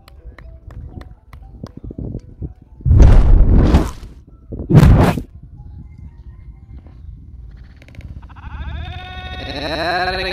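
Two loud rushing bursts of noise, the first about a second long around three seconds in, the second shorter about five seconds in. Near the end a wavering, drawn-out voice-like sound builds.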